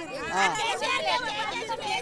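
A crowd of women talking over one another, several voices at once in excited chatter.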